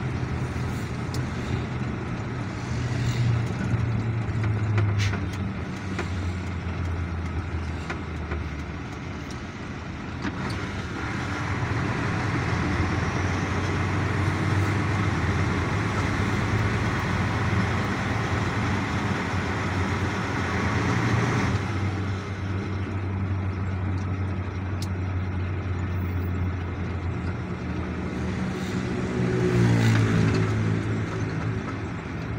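Engine and road noise heard from inside a moving vehicle. A steady low engine drone shifts in pitch as the speed changes, the road noise grows louder for several seconds in the middle, and the engine pitch rises near the end as the vehicle speeds up.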